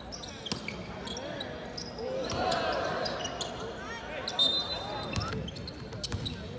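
Live basketball play on a hardwood court in a large arena: a ball bouncing, sneakers squeaking and footsteps, with players' voices calling out. The voices are loudest about halfway through.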